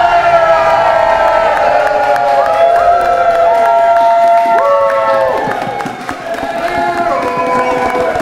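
A group of people cheering and whooping together, many voices holding long sliding shouts at once, dipping briefly about six seconds in.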